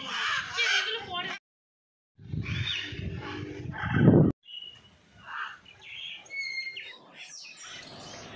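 Macaws squawking with harsh calls. The sound comes in a few short stretches split by sudden cuts, with a second of dead silence about one and a half seconds in. Fainter, thinner calls follow in the second half.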